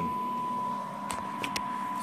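Steady single-pitch audio test tone used to modulate a Galaxy DX949 CB radio, with a few faint clicks about a second in.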